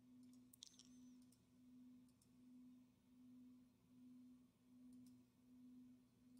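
Near silence: a very faint low hum that swells and fades a little more than once a second, with a few faint clicks.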